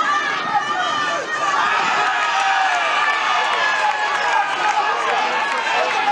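Football spectators shouting and cheering, many voices at once, rising sharply just after the start and staying loud, as a player breaks through on goal.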